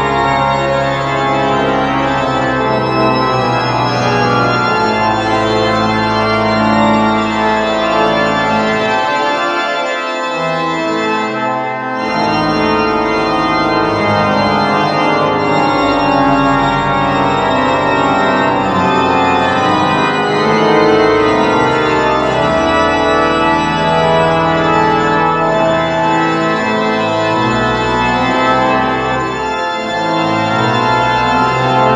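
The Methuen Great Organ, a large concert pipe organ, playing at full organ with all the stops drawn. Loud sustained chords sound over a deep pedal bass, which drops out briefly about ten seconds in.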